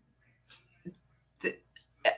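A pause in speech: mostly quiet, with two faint clicks and one short spoken word about a second and a half in.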